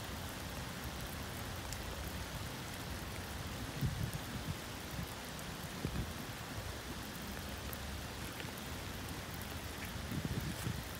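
Steady light rain falling on puddles and wet gravel, with a few soft low thumps about four and six seconds in.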